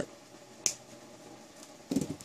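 Flush cutters snipping through 18-gauge silver-plated titanium wire: a single sharp click about two-thirds of a second in.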